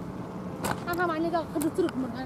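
Faint steady drone of a paramotor's engine flying overhead, with a person talking over it in the second half.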